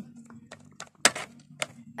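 A few sharp clicks and knocks of small plastic toys being handled against a plastic toy dollhouse, the loudest about a second in.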